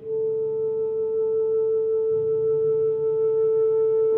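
A saxophone enters on one long held note, very steady, over soft piano underneath; the piano moves to a new low chord about halfway through.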